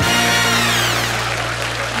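TV game-show sound effect: a held low electronic tone under a sweep falling from high to low. It is the sting that marks a joke landing and the clock stopping at 53 seconds.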